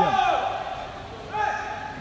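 Two drawn-out, high-pitched shouts, held at one pitch: one at the start and a shorter one just past the middle. They come at the end of a badminton rally, as a point is won.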